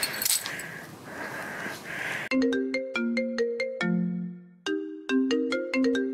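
A mobile phone ringtone plays a melody of quick, clear notes starting about two seconds in. The tune breaks off for a moment and starts over. A soft hiss comes before it.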